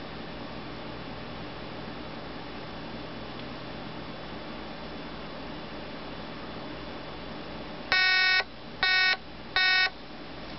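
A Telemania '57 Chevy novelty touch-tone phone begins ringing about eight seconds in on an incoming call: three short electronic ring tones, the first a little longer than the other two. Before that there is only a faint steady room hum.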